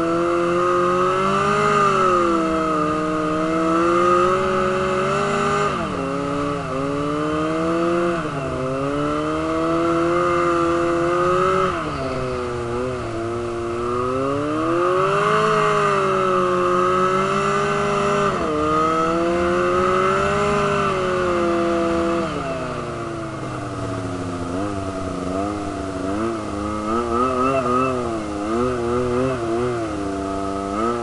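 Snowmobile engine running under way, its pitch rising and falling over several seconds at a time as the throttle changes. In the last few seconds the pitch wavers quickly up and down.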